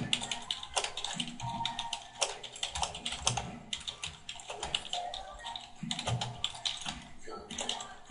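Rapid typing on a computer keyboard, about five or six keystrokes a second without a break, over soft background music.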